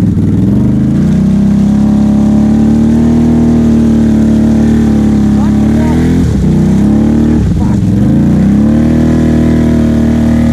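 ATV engine revving hard and held at high revs while the quad is stuck in deep mud. The revs climb in the first second, drop sharply twice, about six and seven and a half seconds in, and climb back up.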